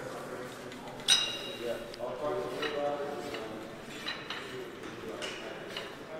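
Steel gym equipment being handled: one sharp metallic clink with a short ringing tone about a second in, then a few fainter clinks. Quiet voices murmur in a large room.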